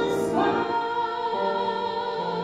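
Live music: a woman singing into a microphone with accompaniment. After a brief breath she slides up into a long held note.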